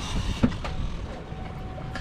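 Twin Suzuki outboard motors running at trolling speed, a steady low rumble mixed with wind and water noise, with a single knock about half a second in.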